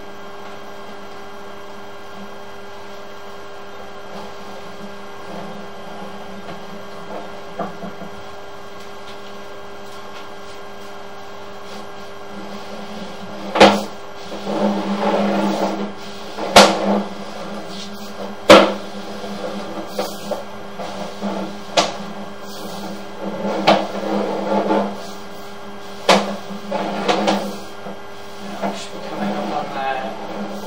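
Steady electrical hum from sewer inspection camera equipment. From about halfway, sharp knocks and bursts of rattling come at irregular intervals as the camera's push cable is pulled back out of the pipe and fed onto its reel.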